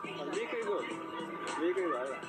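A voice talking over background music, played from a television set.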